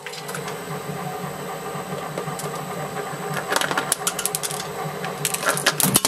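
Twin-shaft industrial shredder running empty: a steady mechanical hum and clatter of its turning cutter shafts. Sharp clicks and knocks come in from about three and a half seconds in and cluster near the end as small balls begin dropping onto the cutters.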